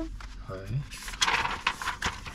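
Paper rustling and shuffling as a learner's driving booklet and loose sheets are handled and leafed through, a run of quick scratchy rustles in the second half.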